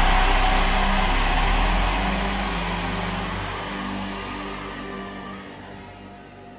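A large congregation's loud shouted response fading away steadily over several seconds, over a held musical chord.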